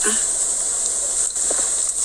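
Steady high-pitched hiss of background noise, with a brief faint voice sound about a second and a half in.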